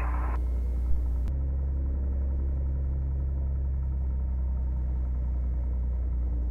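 Piper single-engine aircraft's six-cylinder piston engine running at low taxi power, a steady low drone heard from inside the cockpit, with a slight shift in tone about a second in.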